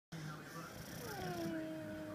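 English bulldog whining: a thin, steady tone that starts about halfway through and dips slightly in pitch before holding, over noisy nasal breathing.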